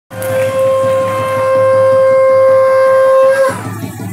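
Sambalpuri folk music: a reed wind instrument holds one long, loud, steady note over a low beat, breaking off about three and a half seconds in.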